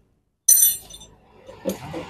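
After a brief dead silence, a single sharp metallic clink about half a second in, ringing high and fading quickly: a small metal object striking metal or concrete.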